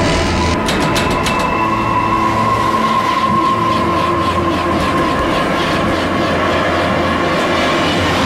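Lift car rattling and rushing down its shaft as if in free fall: a loud steady rumble with a high metallic whine, and a run of sharp metal clatters about a second in.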